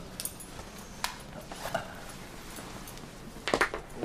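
A man undoing and lowering his suit trousers: a few light metallic clicks and clinks with cloth rustling, and a louder cluster of clinks near the end.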